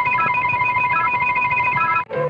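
Electronic intermission music from an Optigan organ: one high note held steadily while quick short notes repeat above it, cutting off abruptly at the end.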